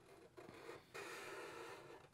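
Faint felt-tip marker strokes on paper: a few small scratches about half a second in, then a steadier stroke of scratching from about a second in that stops just before the end.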